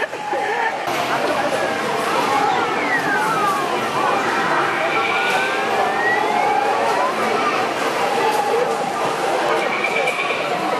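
Busy arcade din: people talking in the background, mixed with electronic game machine sounds made of long sliding tones that rise and fall like little sirens.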